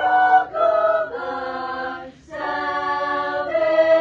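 Choir singing a cappella in held chords that change every second or so, with a brief breath break a little past halfway and then a long sustained chord.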